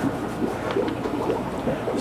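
Small foam paint roller being rolled over wet acrylic paint on an aquarium's glass back panel, a steady rolling noise.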